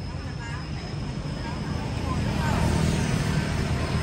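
Low rumble of a motor vehicle engine nearby, growing louder through the second half. A few faint, short high cries sound over it.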